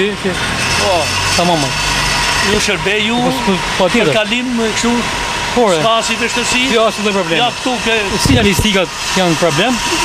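Several men talking over one another, with a car engine running underneath.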